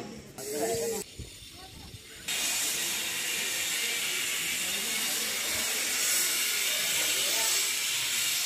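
A brief voice, then a steady hiss that starts suddenly about two seconds in and carries on evenly, with faint voices beneath it.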